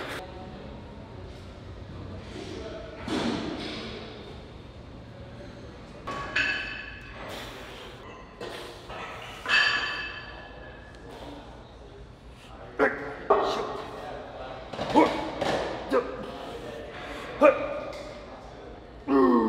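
Gym weights: metal clinks that ring briefly, a couple of times in the first half, then several sharp knocks and thuds in the second half as a plate-loaded barbell is handled for curls. Voices sound in the background of the large hall.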